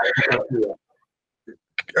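A man's voice over a video call says a short word, then cuts to dead silence for about a second before speech starts again near the end.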